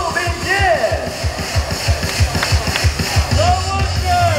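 Stadium cheer music with a fast drum beat, about four beats a second, and voices shouting over it.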